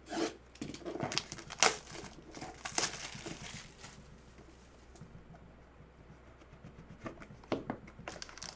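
Plastic shrink wrap being slit and torn off a sealed trading-card box: a run of short crinkling, tearing rasps over the first few seconds, then quieter handling of the cardboard box, and a few more rustles near the end as the lid comes open.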